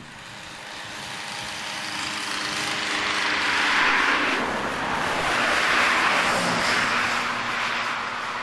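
Small two-stroke auxiliary engines on motorised bicycles running as the bikes ride past one after another. The sound swells to a peak about four seconds in and again about six seconds in, then fades a little.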